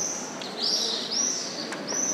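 A bird calling repeatedly in high, arched chirps, each rising and falling in pitch, about four in two seconds.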